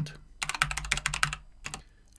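Typing on a computer keyboard: a quick run of about a dozen keystrokes starting about half a second in, then one more keystroke near the end.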